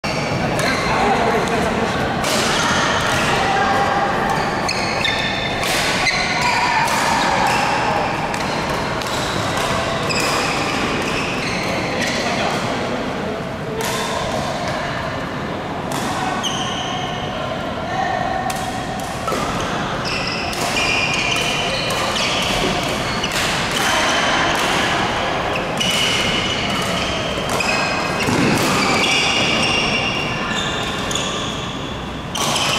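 Badminton doubles play in a large hall: repeated sharp racket strikes on the shuttlecock, short high squeaks of court shoes on the floor, and players' voices from several courts, all with hall echo.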